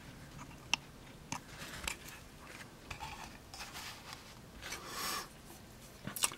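Quiet handling noises: a few light clicks and soft rubbing as a small knife and a pocket scale are handled on a cloth mat, with a brief rustle near the end.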